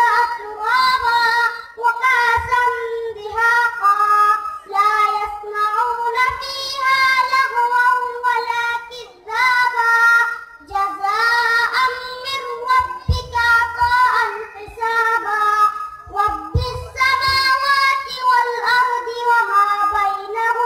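A young boy's high voice reciting the Quran in melodic chanted tilawat through a microphone, holding long ornamented notes in phrases broken by short breaths, with a longer pause about halfway through.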